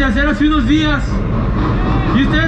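Electronic dance track played loud through a festival sound system: a pitched, chopped vocal line repeating in short phrases over a heavy bass. The vocal stops about a second in, leaving the bass running.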